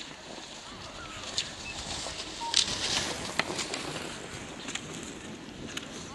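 Cross-country skis and poles on packed snow: a scraping swish with a few sharp clicks, the loudest group about two and a half to three and a half seconds in.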